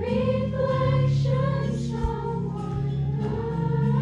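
A youth choir of girls singing together in long held notes.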